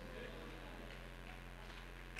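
Quiet room tone with a steady low electrical hum from the sound system.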